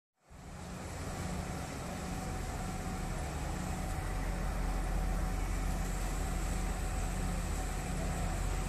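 Steady low drone of a high-speed catamaran ferry's engines with a hiss over it as the ferry comes in toward its berth; it fades in just after the start and grows a little louder.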